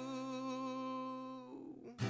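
A man humming one long, steady note, which fades out about a second and a half in.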